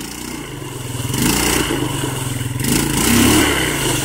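ATV engine revving under load while the quad sits stuck in deep mud, hung up on its underside. The revs climb about a second in and rise higher again in the second half.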